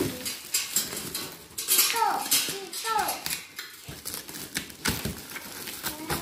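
Stretch-wrap plastic crackling and metal parts of a rice huller clinking and knocking as it is unpacked and assembled. Two short falling cries sound about two and three seconds in.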